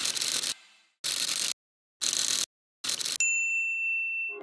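Title-sequence sound effects: four short bursts of noise, each cut off sharply by silence, then a single bright bell-like ding near the end that rings on.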